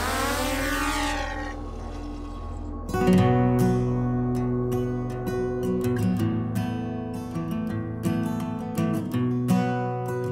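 Small folding quadcopter drone's motors spinning up for takeoff: a rising whine that levels off and fades over about the first two seconds. From about three seconds in, acoustic guitar background music is strummed and plucked.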